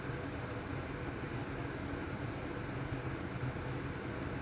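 Steady room tone: a low, even hum with hiss and no distinct events.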